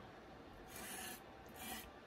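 Stiff bristles of a small wire-handled spiral brush scratching through wet ink on a hard acrylic block as the brush is loaded: two faint, raspy strokes, about a second in and again near the end.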